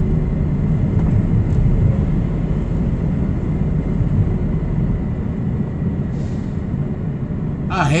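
Steady low rumble of a diesel truck engine and road noise, heard from inside the cab while driving along the highway. The deepest part of the rumble eases about five seconds in.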